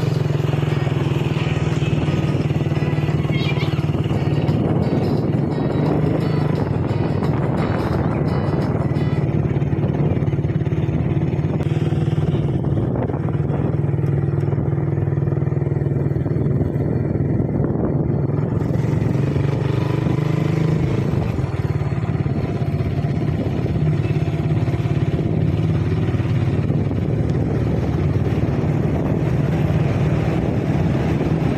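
Motorcycle riding along at a steady speed, its engine giving a steady drone under road noise.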